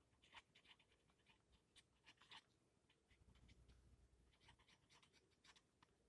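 Faint scratching of a marker pen writing on paper, in short irregular strokes.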